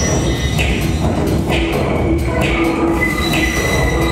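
Electronic music from a dance score: a dense low rumble, a short mid-pitched tone recurring several times, and rising sweeps.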